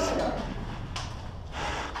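A player's breathing and the rustle of movement, with a soft click about a second in.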